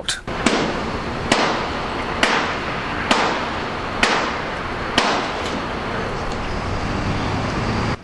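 Sharp metal knocks, about one a second for the first five seconds, each with a brief ring, from work on the scoreboard's metal framework. Under them runs a steady low machine hum with outdoor noise.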